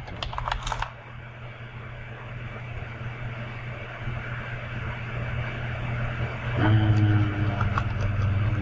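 Computer keyboard typing: a quick run of keystrokes in the first second, then a steady low hum. A louder steady drone with a few held tones comes in near the end.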